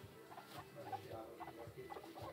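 Guinea pigs making a faint run of short, quick squeaks and clucking sounds, with light scurrying in wood shavings.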